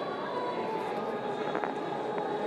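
Steady background din of a busy room with faint indistinct voices, and a couple of light clicks near the end.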